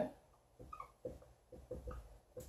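Dry-erase marker squeaking faintly on a whiteboard in a series of short strokes as words are written, starting about half a second in.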